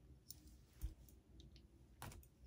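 A few faint clicks and one soft tap a little under a second in as a tarot deck is handled and a card drawn, otherwise near silence.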